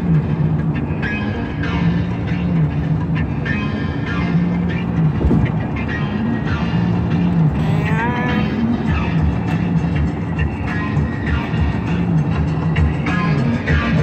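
Music from a car radio, a repeating low riff, heard inside a moving car's cabin with road noise underneath.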